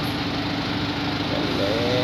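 Small dump truck's engine running steadily at idle, with a constant hum. A short voice-like sound comes near the end.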